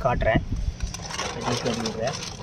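A hand swishing and splashing the water of a small fish tank, a rough patter of small splashes that starts about half a second in.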